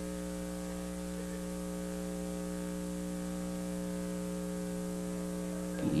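Steady electrical mains hum on the recording, an unchanging buzz of several even tones with no other sound over it; a man's voice begins right at the end.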